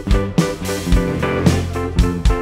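Live band playing an instrumental passage of a pop song with no singing: electric bass and guitar notes over a drum kit keeping a steady beat with the kick drum.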